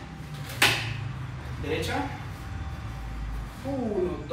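A single sharp knock or slap about half a second in, a hit or fall on the practice mat during hanbo staff training, followed by brief voice sounds.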